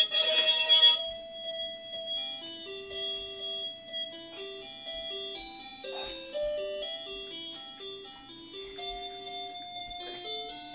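Electronic melody from a baby's musical toy: a simple, tinny tune of single held notes. It begins with a loud, busy burst of sound in the first second, as the toy is set off.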